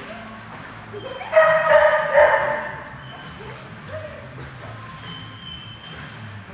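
A dog barking loudly in a short run of yelping barks about a second and a half in, while swimming in a hydrotherapy pool.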